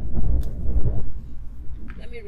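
Wind buffeting the microphone, a heavy uneven low rumble, with two faint clicks.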